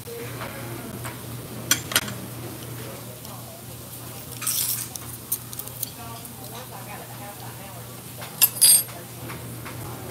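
Metal cutlery clinking against dishes: two sharp clinks about two seconds in and a louder pair near the end. A short paper rustle in the middle as a condiment packet is torn open. A steady low hum runs underneath.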